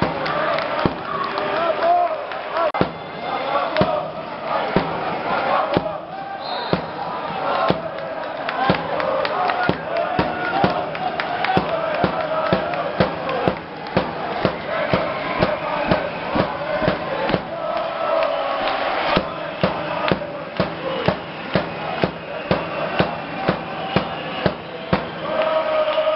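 A crowd of handball supporters chanting in unison, with sharp beats in time at about one and a half a second.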